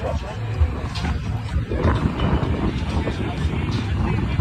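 Wind buffeting the microphone in a low, uneven rumble, over the background chatter of a crowd.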